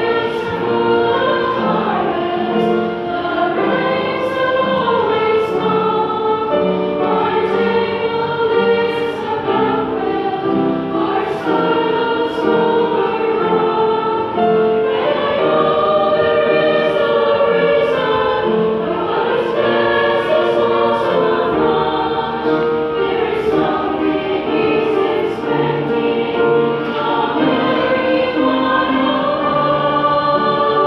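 Women's choir singing a Christian song, their voices moving together from note to note without a break.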